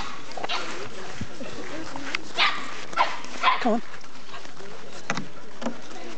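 A dog barking, a couple of short barks.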